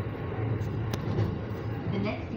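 Train running noise heard inside the driver's cab: a steady rumble with a low hum, and one sharp click about a second in.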